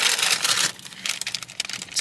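Paper takeaway bag rustling and crinkling as it is handled, loudest in the first half-second or so, then fainter crackles.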